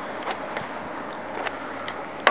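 Steady outdoor background noise with a few faint clicks from handling the handheld camera.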